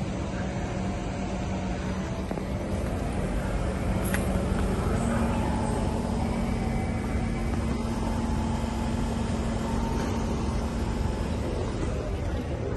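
Kawasaki C151 MRT train standing at an underground platform with its doors open, its auxiliary equipment and air-conditioning giving a steady hum with a low tone that steps up slightly in pitch about five seconds in. A faint click about four seconds in.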